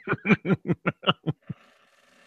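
A man laughing in a quick run of short chuckles, about six a second, that die away after about a second and a half.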